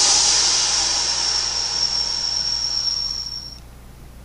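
Cymbal crash ringing out at the end of the song, struck once and fading away over about three and a half seconds.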